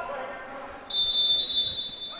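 Referee's whistle: one long, steady, shrill blast starting about a second in, stopping play on the held ball.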